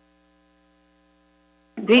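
Faint, steady electrical hum made of several thin tones on the audio line, with a voice starting to speak near the end.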